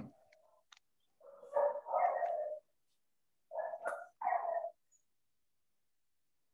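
A dog barking four times, in two pairs about two seconds apart, heard over video-call audio.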